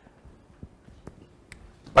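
A pause in a man's spoken lecture: faint room tone with a few soft, scattered clicks, then his voice starts again at the very end.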